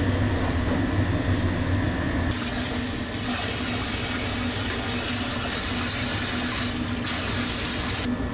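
Tap water running, starting about two seconds in and cutting off suddenly near the end, over a steady low hum of kitchen equipment.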